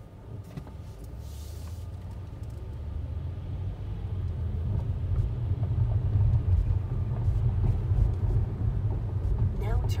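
Low road and engine rumble heard inside a car's cabin, growing steadily louder as the car pulls away on a green light and picks up speed.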